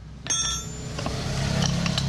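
A steel wrench clinks once with a bright metallic ring about a quarter second in. A few lighter metal clicks of tools on the brake booster's rod and plate follow, over a steady low rumble.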